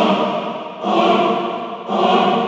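Choir vocal loop at 116 BPM playing: sustained sung chords, a new one swelling in about once a second and fading a little before the next.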